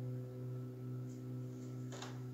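Acoustic guitar notes left ringing, a low note sustaining and slowly fading with a slight wavering in level. A short brushing noise comes near the end.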